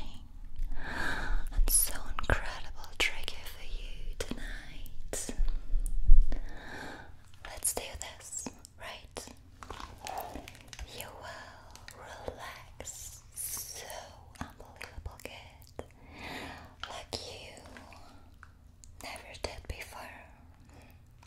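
Close-miked whispering and mouth sounds with many soft clicks, louder in the first six seconds, where a low rumble also comes and goes.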